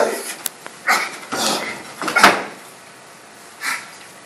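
Two actors scuffling on a stage, with short strained grunts and breaths and a sharp thump a little over two seconds in as one of them is brought down to the floor.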